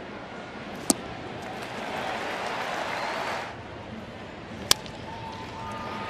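Ballpark crowd murmur with two sharp cracks. The first comes about a second in; the second, a little over a second before the end, is the bat hitting a pitch that is grounded to shortstop.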